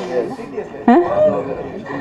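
A woman's voice through a microphone, in short, rising and falling vocal sounds without clear words.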